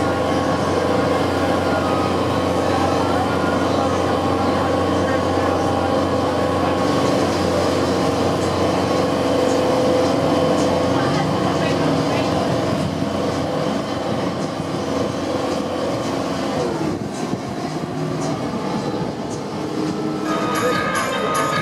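Boat engine running steadily under way, a constant drone with water rushing along the hull, easing a little in the last several seconds.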